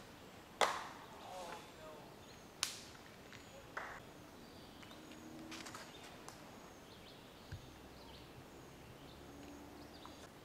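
Sharp thwacks of disc golf drives thrown through trees, the loudest about half a second in and smaller ones a few seconds later, with faint voices.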